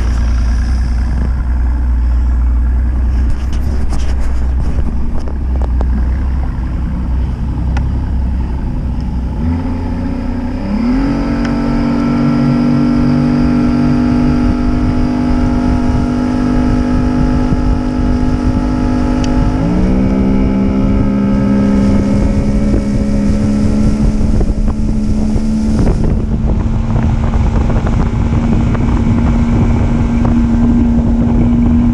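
A 75 hp two-stroke outboard motor, freshly fitted with new reed valves, running in gear at low speed, then throttled up about ten seconds in, its pitch rising and holding steady at speed. The pitch dips and recovers about two-thirds of the way through, with wind on the microphone.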